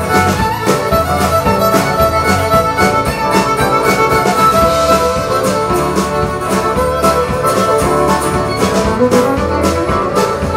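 A live country band playing with a steady beat, with a fiddle bowing a lead line over the bass and drums.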